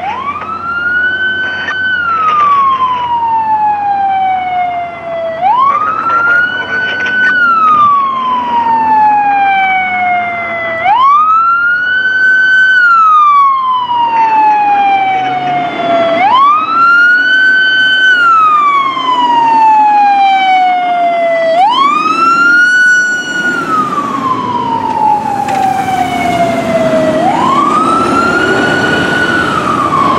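Pierce fire engine's siren on wail: each cycle climbs quickly to a high held note, then slides slowly back down, repeating about every five and a half seconds. It grows louder over the first dozen seconds as the engine approaches. Engine and road noise thickens under it near the end.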